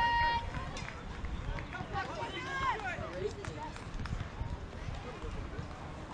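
Indistinct shouts and chatter from players and spectators at an outdoor youth baseball game, loudest around two to three seconds in, over a steady low rumble. A held note from the intro music ends just after the start.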